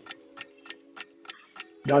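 Clock-ticking sound effect marking a countdown, a steady run of quick ticks about three a second, over a held low music chord.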